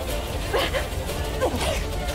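A man crying out in anguish, short wails that fall in pitch about once a second, over a low drone of dramatic background music.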